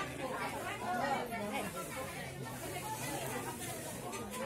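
Indistinct chatter of several people talking at once, low in level.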